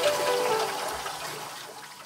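Tap water running from a utility-sink faucet over a paintbrush into the sink as black paint is rinsed out of the brush. The sound fades steadily away.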